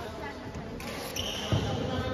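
Echoing indoor badminton hall with voices talking, a short high squeak from a little after a second in, and a single low thump about one and a half seconds in.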